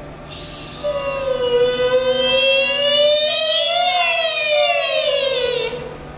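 A female Peking opera voice in a high, bright register holding one long note for about five seconds. After a brief hissing consonant, the pitch climbs slowly to a peak a little past the middle, then slides down near the end.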